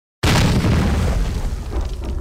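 A deep boom sound effect for a logo intro hits suddenly a moment in: a heavy low rumble with a hissing top that slowly fades away.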